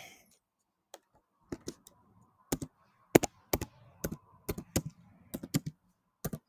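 Typing on a computer keyboard: separate key clicks, sparse at first, then coming in quick irregular runs from about two and a half seconds in.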